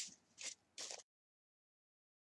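Two short hissing spritzes from a trigger spray bottle misting water onto a curly human-hair wig, about half a second apart, then dead silence from about a second in.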